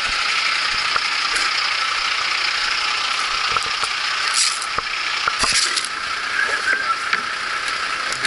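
A steady mechanical hiss, with the knocks and clatter of rescue gear being handled and set down on pavement, the sharpest knocks a little before and just past halfway.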